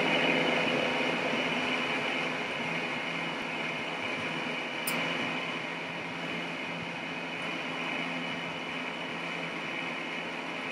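Steady hiss with a faint constant hum, room tone picked up by a webcam microphone, easing slightly over the first few seconds, with one faint click about halfway through.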